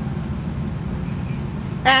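Steady low background rumble, with no distinct events; a man's voice begins near the end.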